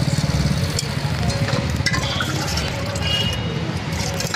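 Steady low rumble of a motor engine running close by, with a fast even pulse to it, and a few light clicks over the top.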